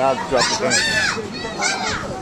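Children's voices: several high-pitched kids calling out and chattering while they play.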